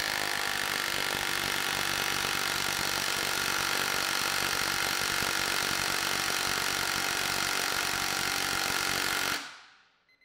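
Milwaukee M18 Gen 2 cordless impact wrench hammering steadily on a bolt in a torque-test dyno, its baseline run with a standard socket. It stops suddenly near the end.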